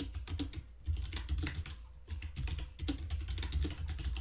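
Computer keyboard being typed on: a run of quick, unevenly spaced keystroke clicks.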